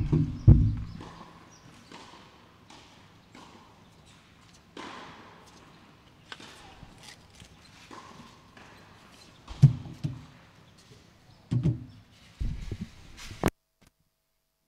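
Scattered knocks and sharp clicks with several heavy low thumps, the loudest at the start and again near the end, on a tennis court between points. The sound cuts off suddenly near the end.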